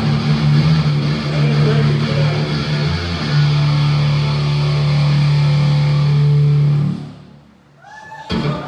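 Thrash metal band playing live with distorted electric guitar, ending on a long held chord that stops about seven seconds in.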